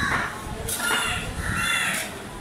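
Crows cawing: a harsh caw at the start, then two more in quick succession from about two-thirds of a second in.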